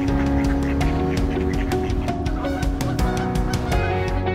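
Canada geese honking over background music with a steady beat.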